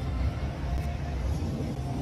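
Steady low rumble of indoor background noise, with no sharp events.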